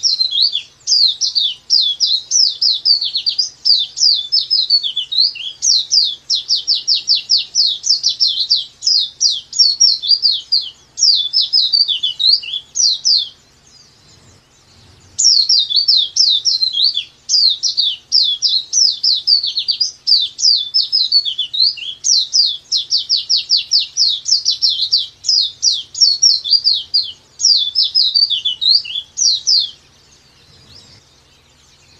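Pleci dakbal (white-eye) singing its long 'nembak panjang' song: a fast, unbroken run of high, sharp chirping notes. There is one long phrase, a pause of about two seconds near the middle, then a second long phrase.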